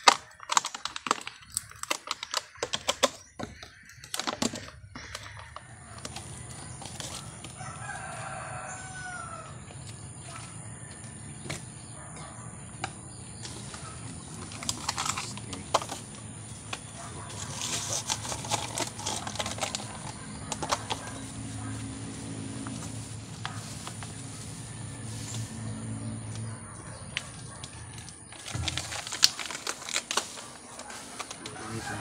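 Thin plastic cup crackling and clicking as it is handled and cut with scissors in the first few seconds. A steady low hum follows, with a brief wavering bird call about eight seconds in.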